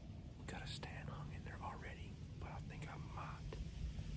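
A man whispering to the camera in short phrases.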